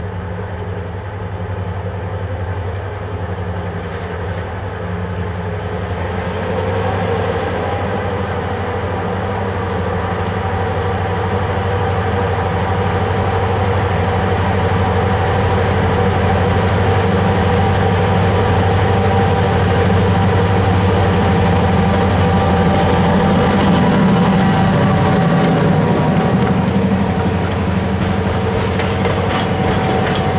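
EMD GP7 diesel-electric locomotive's two-stroke engine running steadily as it approaches, growing louder as it nears. Near the end, passenger coaches roll past close by, their wheels clicking over the rail joints.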